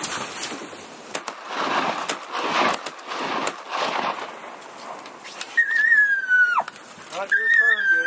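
Gusty wind rushing over the microphone, then two high whistled notes about a second apart, the first held steady for about a second before sliding down in pitch.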